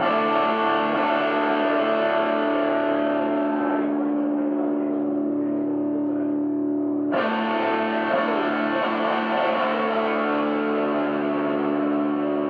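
Electric guitar played live through distortion and effects pedals: sustained, layered droning chords at a steady level. The brighter upper part of the sound drops away about four seconds in and comes back abruptly about seven seconds in.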